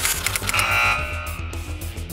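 Rock-style sports-segment theme music with a steady beat, with a held high tone about half a second to a second in.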